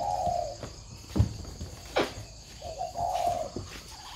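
Spotted doves cooing: one drawn-out coo at the start and another about two and a half seconds in. Two sharp knocks come in between, the first the loudest sound.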